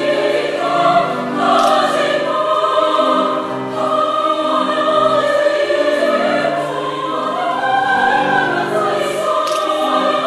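Women's choir singing in several parts, holding sustained chords that shift from one to the next.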